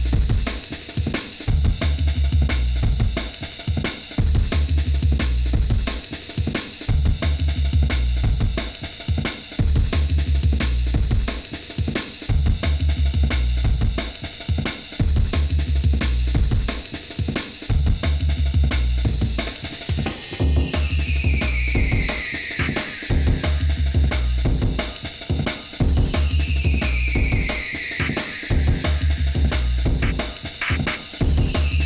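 Drum and bass DJ mix: fast breakbeat drums over a heavy sub-bass line. Falling high-pitched sweeps come three times in the second half.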